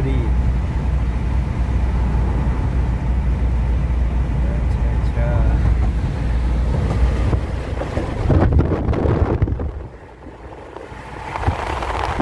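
Steady low road and engine rumble inside the cabin of a Toyota Innova cruising on a highway. Near the end it dips briefly, then a rushing wind noise rises.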